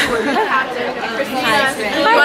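Several young women's voices chattering and talking over one another, the words not clear.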